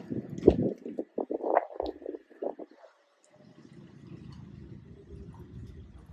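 Street noise on a phone microphone: irregular low buffeting bumps for about the first half. From about halfway there is a steady low rumble of traffic.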